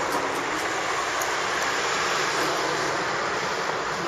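Steady rushing noise at an even level, cutting off suddenly at the end.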